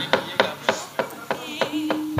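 Wooden cempala mallet rapping on the dalang's kothak puppet chest in an even run of knocks, about three a second, the dhodhogan cue for the gamelan to strike up a song. A steady held note comes in near the end.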